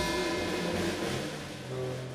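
Small jazz band with an upright bass playing the instrumental closing bars of a song, with a low note held near the end.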